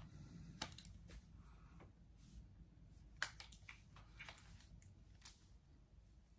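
Near silence, with soft rustles and three faint, sharp clicks as a hair straightener is clamped and drawn through long hair.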